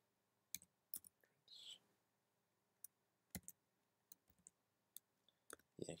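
Faint, irregular keystrokes on a computer keyboard, about a dozen separate clicks spaced unevenly as a formula is typed.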